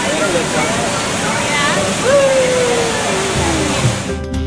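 Riders on the Seven Dwarfs Mine Train roller coaster whooping and screaming over a steady rushing noise from the moving train, with one long falling cry about halfway through. Guitar music comes in near the end.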